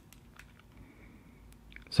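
A few faint, scattered clicks from handling a quadcopter's carbon-fibre top plate and its strapped-on video transmitter.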